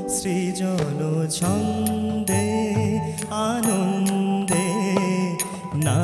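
A male vocalist sings a long, gliding, ornamented melodic line in Indian classical style. Beneath the voice run steady held instrumental notes and repeated percussion strokes.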